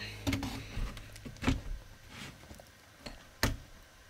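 A white plastic roof-light trim frame being handled and held up against the ceiling: a few light plastic knocks and taps, the loudest about one and a half seconds in and again shortly before the end.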